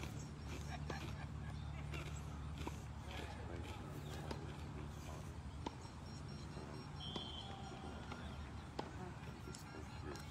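Quiet outdoor ambience: a steady low rumble with faint distant voices and a few soft knocks, and one brief high beep about seven seconds in.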